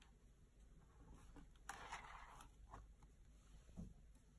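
Near silence with faint handling of a hardcover picture book as it is closed: a soft paper rustle about halfway through, a few light ticks, and a small thud near the end.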